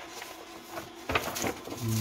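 Sheets of paper being handled and shuffled on a heat-press table, with a sharp tap about a second in followed by a brief rustle.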